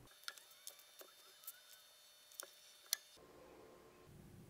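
Near silence: faint room tone with a handful of soft, short clicks, the sharpest about three seconds in.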